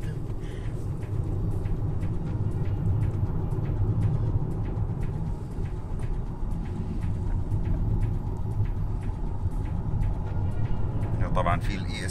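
Steady low engine and road rumble heard from inside the cabin of a 2015 Hyundai Sonata under way.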